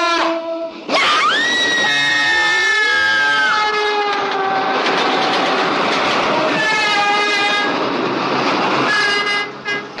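Train rushing past with its horn sounding in several long blasts over the rumble. About a second in, a long high note rises and holds until about three and a half seconds in.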